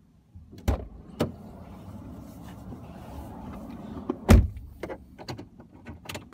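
Inside a car: a steady low cabin rumble starts about half a second in, with a few sharp clicks and knocks and one loud, deep thump about four seconds in, then several lighter clicks near the end.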